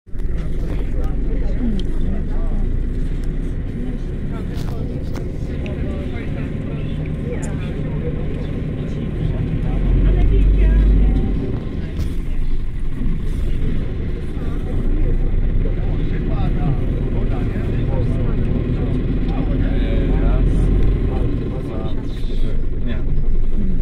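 Inside a 2003 Mercedes-Benz 814D bus on the move: its four-cylinder diesel engine and road noise make a steady low rumble, which swells louder briefly about halfway through.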